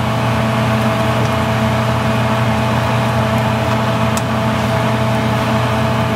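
Kitchen range-hood exhaust fan running over a gas stove: a steady machine hum with a hiss, unchanging throughout, with one faint click about four seconds in.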